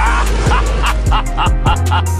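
Chilled trap beat outro music with a deep bass and regular drum hits, with a run of short sounds repeating about every half second over it.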